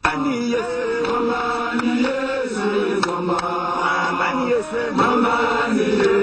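A group of men's voices chanting a religious praise song together, after a brief dropout at the very start.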